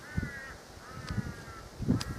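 A bird calling twice, each call drawn out for about half a second, with a few low thuds underneath, the loudest near the end.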